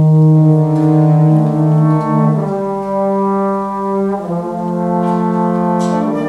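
Wind ensemble playing slow, sustained chords led by the brass, the harmony shifting to a new chord about two seconds in and again about four seconds in.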